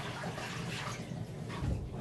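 Faint sloshing and dripping of dye water in a bucket in a bathtub as a wet silk dress is handled and lifted out.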